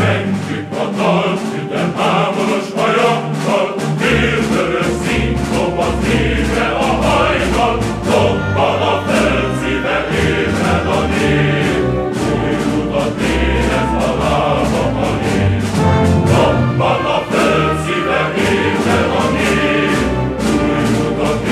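A choir singing a rousing communist march song in Hungarian over instrumental accompaniment, with low bass notes joining about four seconds in.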